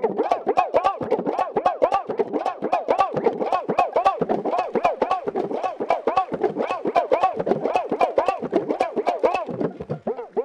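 Bhapang, the Rajasthani one-string pulled-string drum, plucked in a fast steady rhythm, several strokes a second. Each pluck twangs with a pitch that bends up and falls back as the string is pulled and released.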